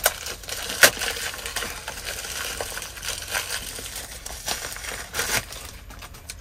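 A plastic packaging bag being torn open and crinkled by hand, with sharp rips at the start and just under a second in, then softer crackling and a few more crinkles near the end.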